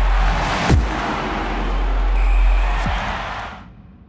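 Logo sting sound design: a deep, steady low rumble under a noisy whoosh, with a sharp hit and a falling boom about three-quarters of a second in, and another falling boom near three seconds. The whole sting fades out near the end.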